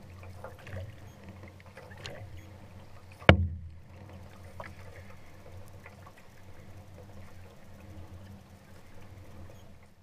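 Water sounds of an outrigger canoe being paddled, with faint splashes of paddle strokes over a steady low hum. About three seconds in a single sharp knock stands out as the loudest sound.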